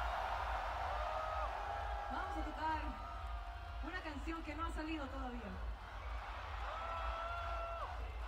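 Faint festival crowd: scattered voices and a couple of held high calls, about a second in and near the end, over a low steady hum.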